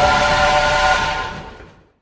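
Steam locomotive whistle sounding a held multi-note chord that fades away over about a second and a half.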